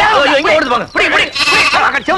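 A person's voice crying out, its pitch wavering up and down, in short broken phrases.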